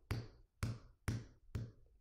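Four dull knocks on a hard surface, evenly spaced about two a second, played as a read-aloud sound effect for a dog's tail thumping against a barn door.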